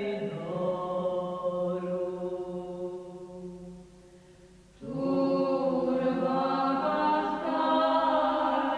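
Soundtrack music of sustained, chant-like choral voices holding long chords. It dies away around four seconds in, then comes back in abruptly and fuller with a new held chord about five seconds in.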